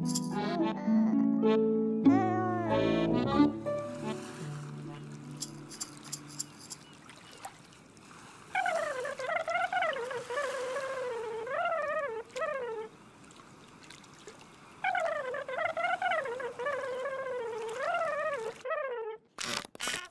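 Background music from a children's animation: a short passage of held notes that fades away, then two wavering melody phrases, each about four seconds long.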